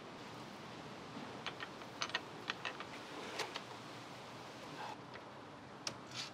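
Faint rustling with a scatter of light, irregular clicks, about ten of them, through the middle.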